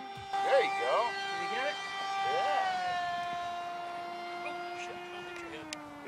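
Electric motor and propeller of a radio-controlled Icon A5 model seaplane whining steadily as it lifts off the water and climbs away; the pitch steps down a little past halfway and again near the end. A few short vocal sounds in the first three seconds.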